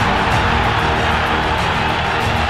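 Background music playing steadily, with a dense, even wash of noise beneath it.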